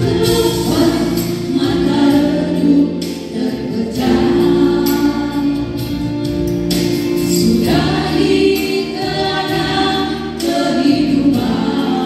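A group of women singing a gospel song together into handheld microphones, holding long notes.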